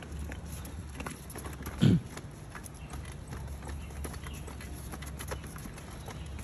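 Small plastic wheels of a toddler's balance bike rattling and clicking over patterned paving tiles, with light shoe scuffs as the child pushes along. A single short, loud thump comes about two seconds in.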